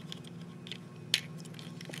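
Plastic parts of a Transformers Combiner Wars Deluxe Rook figure being handled and folded at the hinges, with a few faint clicks and one sharp click a little over a second in, over a faint steady hum.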